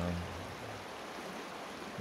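Creek water running over rocks: a steady, even rush.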